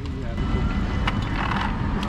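Steady wind and road rumble on a bicycle-mounted camera's microphone, with a van's engine passing close by in the second half.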